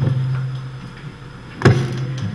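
A steady low electrical hum, with one sharp knock near the end.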